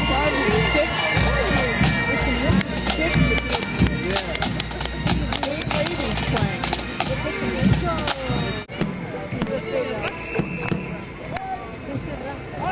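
Pipe band marching past: bagpipes playing with drums beating, over nearby crowd voices. The band sound drops away abruptly near the end, leaving mostly chatter.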